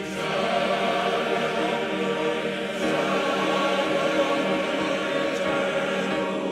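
Massed men's choir singing a Romanian hymn of praise, holding long sustained chords.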